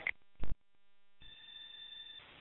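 Police two-way radio channel between transmissions: a short, loud burst of squelch noise about half a second in, then quiet, then a faint hiss with a steady high tone as the channel opens again a little past a second in.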